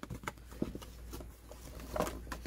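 Faint rustling and small scattered clicks of a thin paperboard toy box being handled as its flaps are pulled open.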